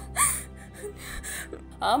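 A woman gasps for breath while crying, a short in-breath just after the start, over low, steady background music. Her tearful speech starts again near the end.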